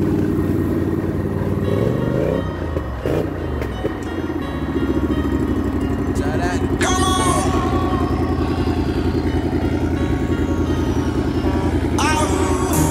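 ATV engines running and revving while a four-wheeler churns through a muddy creek crossing, with music playing over them.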